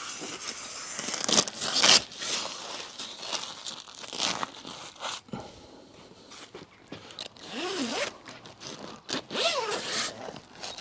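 The PVC cover bag of a vehicle side awning being unzipped and handled: a series of short zipper rasps, with stiff plastic crinkling and scraping.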